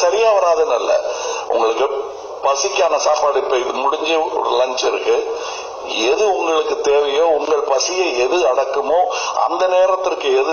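Only speech: a man talking continuously into a handheld microphone.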